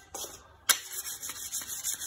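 Wet whetstone rubbed by hand along the steel blade of a Chinese cleaver to sharpen it: stone grinding on steel. A sharp click comes a little over half a second in, then a fast, steady run of back-and-forth scraping strokes.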